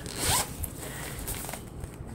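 Zipper on a Ju-Ju-Be fabric diaper bag being pulled, loudest in the first half-second, then softer handling of the bag.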